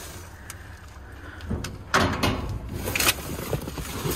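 Cardboard boxes and loose trash rustling and scraping as a box is shifted and pulled up out of a steel dumpster, with a few sharper knocks about two and three seconds in. A low steady rumble runs underneath.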